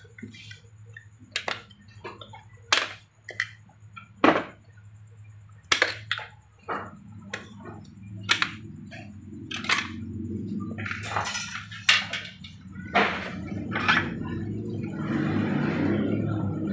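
Screwdriver and steel parts clicking and clinking inside an automatic transmission's aluminium case as the B2 clutch pack is pried out: a dozen or so sharp, irregular metal clicks, with some scraping in between.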